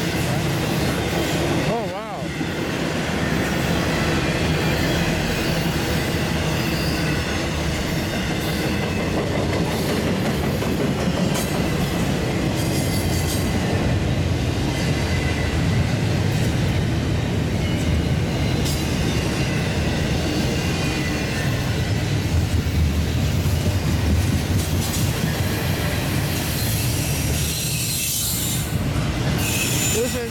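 Double-stack intermodal freight cars rolling past close by: a steady, loud rumble of steel wheels on the rails.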